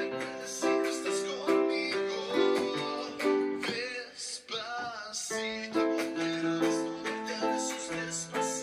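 Electronic keyboard chords played in a steady rhythm, about two a second, over an app's backing track with a plucked guitar-like accompaniment; a short sung phrase comes in about halfway through.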